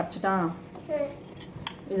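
A metal bowl being handled and set down, giving two sharp clinks about a second and a half in, after a brief bit of a woman's voice.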